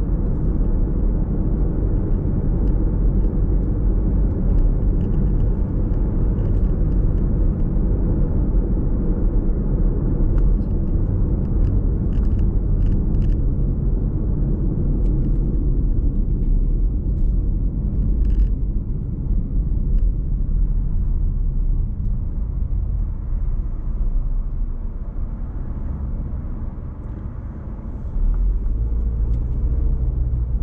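Car driving, heard from inside the cabin: a steady low rumble of engine and tyre noise. It eases off for several seconds in the second half as the car slows behind traffic, then rises again shortly before the end.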